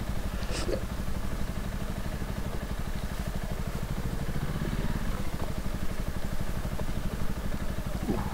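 Honda CRF250L's single-cylinder engine running steadily at low speed, a fast even putter, with the bike crawling slowly in a low gear over a rough dirt track.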